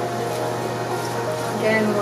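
Soft background music over a steady low room hum, with a brief faint voice near the end.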